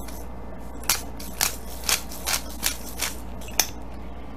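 Hand-cranked black pepper grinder twisted over a bowl, giving a run of about seven short crunching grinds, roughly two a second, as the peppercorns are cracked.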